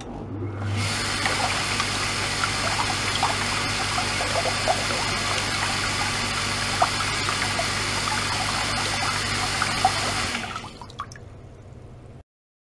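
A magnet-drive circulation pump starts with a low electric hum and drives water through a braided hose into a plastic tub; the return flow rushes and churns, with small bubbles popping throughout. About ten seconds in the pump stops and the rush drops to a faint trickle.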